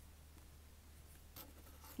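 Near silence with faint rustling of paper stickers being shuffled by hand, the clearest soft scrape about a second and a half in, over a low steady hum.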